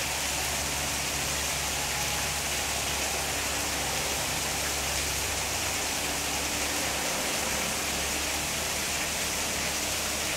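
A steady, even hiss of falling water.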